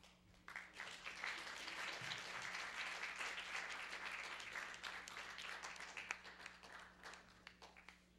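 Audience applauding, starting about half a second in and dying away near the end.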